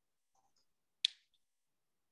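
Near silence broken by a single short, sharp click about a second in.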